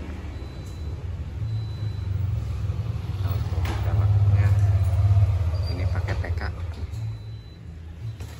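Low vehicle engine rumble that swells to its loudest about halfway through and fades away near the end.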